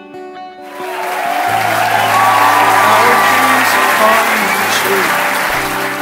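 A room of guests applauding and cheering. It breaks out about half a second in, swells to a peak mid-way and eases off near the end, with music continuing underneath.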